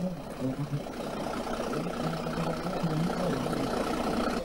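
Truck engine idling, with faint voices in the background.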